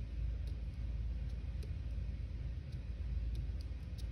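Steady low room hum with a few faint, light ticks scattered through it, as a paint-covered pine cone is pressed onto paper.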